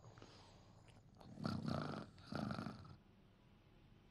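Two short, rough vocal sounds from a man, about a second apart, over quiet room tone.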